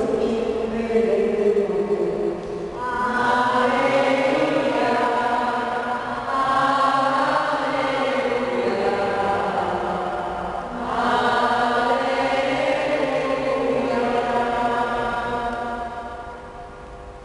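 Voices singing a slow liturgical chant, in phrases of a few seconds each with long held notes.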